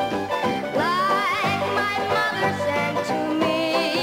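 Upbeat show-tune music: piano accompaniment with a young girl's singing voice, which glides up into a held note with vibrato about a second in.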